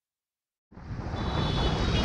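Silence at first, then, well under a second in, the riding sound of a Royal Enfield Bullet 500 fades in and grows louder: a dense, steady rush of its single-cylinder engine, tyres on a wet road and wind on the helmet-mounted camera.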